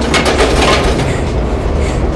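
Audio-drama sound effect of explosions blasting open doorways: a loud, continuous deep rumble with crackle, heaviest in its first half-second.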